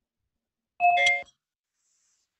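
A short two-note electronic notification chime from the video-call app, the second note lower than the first, lasting about half a second.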